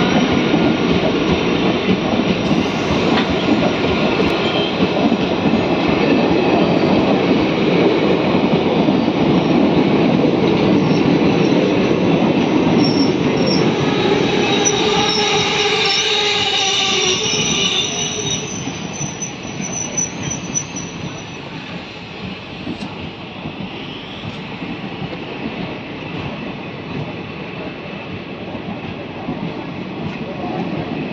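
Indian Railways passenger coaches rolling slowly past along the platform with a steady rumble. From about 13 to 18 seconds in, the wheels squeal in high tones. After that the rolling grows quieter as the arriving train slows.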